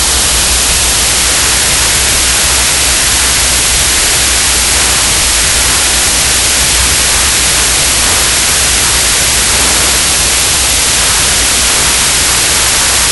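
Hydrogen-oxygen (HHO) torch flame hissing loudly and steadily as it engraves concrete, with a low hum underneath.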